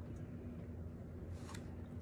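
Quiet room tone with a steady low hum, and a faint short tap about one and a half seconds in as long fingernails handle a corrugated cardboard box.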